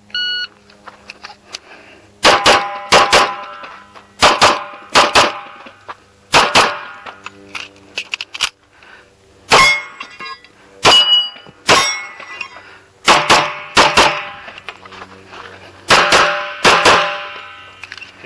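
A shot timer beeps once at the start, then a .45 ACP Kimber Custom II 1911 pistol fires about twenty shots, mostly as quick double taps, in several strings with short pauses between them.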